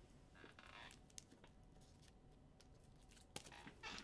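Near silence: room tone, with a few faint clicks about a second in and again near the end.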